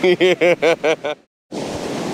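A person laughing in a quick run of short bursts that stops just past the first second; after a brief gap, a steady rush of surf and wind on the microphone.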